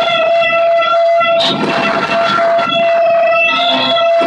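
Loud improvised noise music from electronics and electric guitar: a steady droning tone with overtones over a rough, shifting noise layer.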